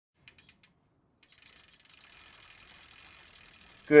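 A few sharp clicks, then a faint, rapid mechanical clicking with a soft hiss.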